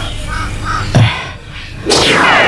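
A bird cawing twice in short calls, with a single sharp thump about a second in that is the loudest sound. A loud sweeping sound effect sets in at the very end.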